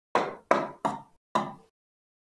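Four sharp knocks in quick succession, about a third of a second apart, from tapping on a touchscreen display board while the slide is being changed.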